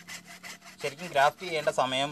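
Hacksaw cutting through a mango tree trunk in quick back-and-forth strokes. About a second in, a louder voice starts over the sawing.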